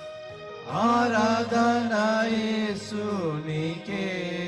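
Male voices singing a Telugu worship song, coming in about a second in with long held notes that slide down in pitch near the end.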